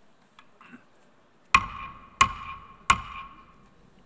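A wooden gavel struck three times on its wooden sounding block, about two-thirds of a second apart, each knock leaving a short ringing tail. The strikes call the General Assembly meeting to order.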